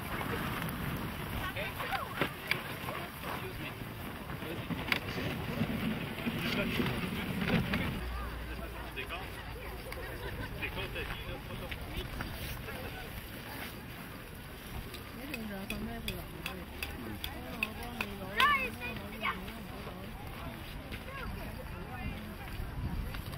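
Background voices of adults and children talking and calling, not close to the microphone, with scattered short clicks and knocks; one sharp knock stands out late on.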